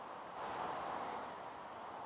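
Faint rustle of hands pressing soil and bark-chip mulch down around a newly planted seedling, swelling a little about half a second in, over a soft outdoor hiss.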